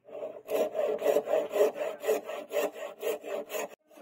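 Hacksaw cutting a hardwood handle block held in a vise, rasping back and forth at about four strokes a second, with a brief pause just before the end.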